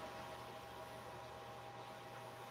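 Faint steady hiss with a light electrical hum: quiet room tone.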